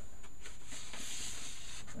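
Sheets of paper rustling and sliding against each other as a sheet is taken off a board and the next one uncovered: a soft scraping hiss that swells about a second in.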